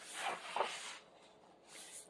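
A page of a picture book being turned by hand: a paper swish lasting about a second, then a fainter brush of paper near the end.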